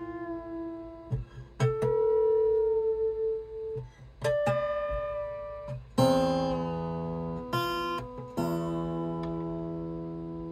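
Single strings of a steel-string acoustic travel guitar plucked one at a time and left to ring while it is being tuned, about six notes a second or two apart. A couple of the notes bend slightly in pitch as the tuner is turned.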